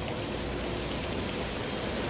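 Steady rain falling in a city street, with a low steady rumble underneath.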